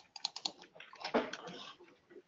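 Typing on a computer keyboard picked up through an open conference-call line: a quick run of key clicks, then a louder, noisier stretch about a second in.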